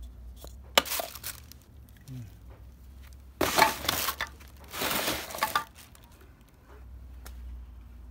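A plastic cap clicks off an aerosol can of pruning sealer, then two loud noisy bursts follow, each just under a second long, from handling the can and its surroundings.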